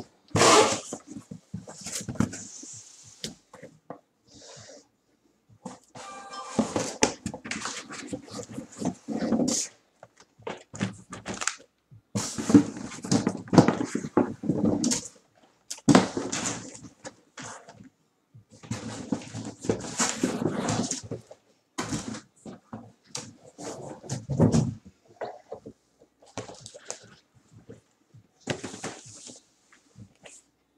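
Cardboard shipping case being opened and handled, with boxes of trading cards slid and lifted out of it: irregular bursts of cardboard scraping, rustling and knocking, with a brief squeak about six seconds in.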